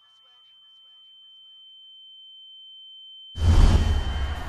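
A single steady high-pitched electronic tone, like a sine-wave beep, held and slowly growing louder. About three and a half seconds in, a loud rush of noise with a heavy low end breaks in over it.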